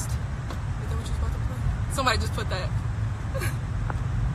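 Steady low rumble of a car in motion, heard from inside the cabin, with a short burst of a voice about two seconds in.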